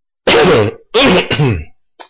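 A man coughing twice into his fist, two loud coughs about three-quarters of a second apart.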